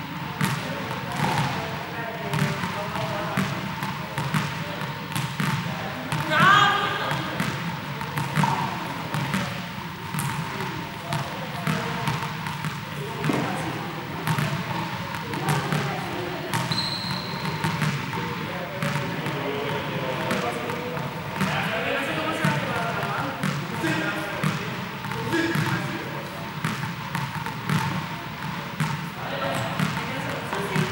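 Indistinct voices echoing around a large sports hall, with repeated sharp ball bounces on the hard court floor.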